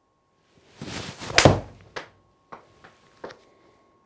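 Full swing with a golf iron: a rising whoosh, then a sharp crack as the club strikes the ball off a hitting mat about a second and a half in. The ball is caught a little thin. Several lighter knocks follow over the next two seconds.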